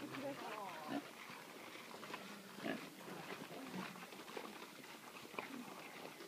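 Pigs grunting now and then at irregular intervals while they root in the mud.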